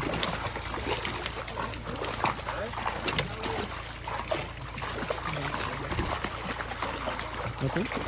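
Many milkfish thrashing and splashing in shallow pond water as they are crowded in a harvest net: a continuous patter of many small splashes, with people talking.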